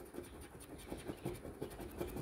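A metal coin scratching the coating off a paper scratch-off lottery ticket in a quick run of short, quiet strokes, about six or seven a second.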